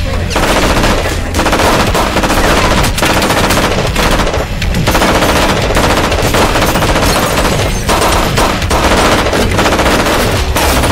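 Sustained automatic gunfire: long bursts of rapid shots broken by a few short pauses.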